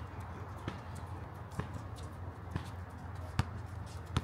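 A basketball bouncing on an outdoor hard court: four bounces about a second apart, the last the loudest, over a steady low hum.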